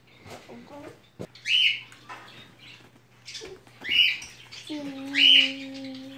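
A series of short, high, bird-like chirps, one every second or two. A steady, level tone comes in near the end and holds.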